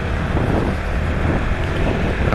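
Honda Pop 110i's small single-cylinder engine running while the motorcycle is under way, with wind rushing over the microphone.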